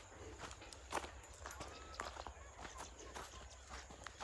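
Footsteps of people walking on grassy ground, soft irregular steps, with a faint short rising tone about one and a half seconds in.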